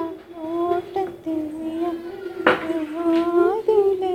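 A high voice sings a wordless tune in long notes that glide from one pitch to the next, with a single sharp knock about two and a half seconds in.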